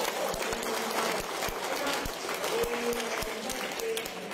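A crowd applauding, a dense run of many hands clapping, with a few voices calling out over it.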